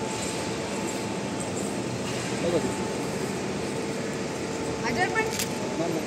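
Indistinct voices over a steady background hum, with a short burst of voice about two and a half seconds in and more voices near the end. A single sharp click comes shortly before the end.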